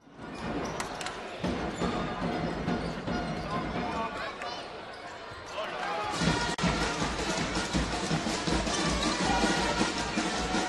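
Basketball game sound: a ball bouncing on the court amid arena crowd noise and music, with a voice at times. It starts abruptly and grows louder and brighter about six seconds in.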